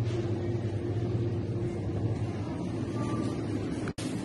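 Steady low mechanical hum with a faint rumble, breaking off for an instant near the end.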